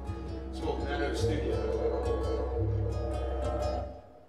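Layered music played back through a live looping rig: a steady low drone under sustained pitched layers and odd electronic sounds, all stopping abruptly near the end.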